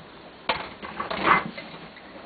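Filled glass canning jars and their metal lids handled on a countertop: a sharp clink about half a second in, then a brief scraping rattle.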